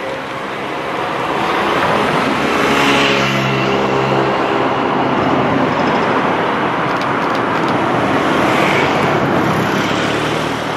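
Cars driving past close by on the road, engine hum and tyre noise swelling about three seconds in and again near the end.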